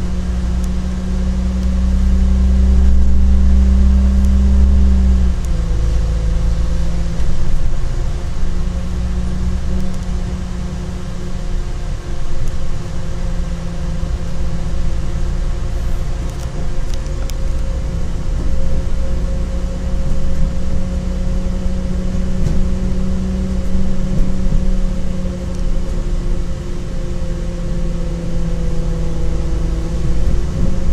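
Inside the carriage of a CAF Class 4000 diesel multiple unit under way: the underfloor diesel engine drones under power. Its deep note drops about five seconds in, and it then runs on steadily.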